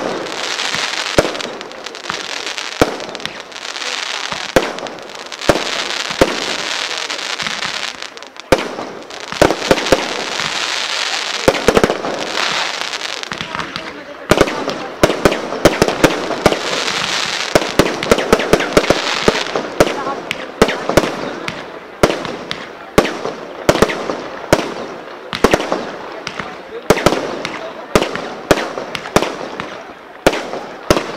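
Professional Firebase multi-shot fireworks cake firing: a steady string of sharp shots, several a second, over a continuing crackling hiss of bursting stars.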